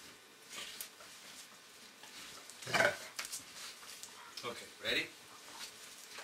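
Weimaraner giving two short growls, a little under three seconds in and again about five seconds in.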